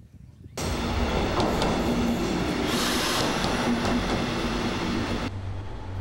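A train passing along a station platform: steady wheel and running noise with a low hum underneath. It starts suddenly about half a second in and cuts off abruptly near the end.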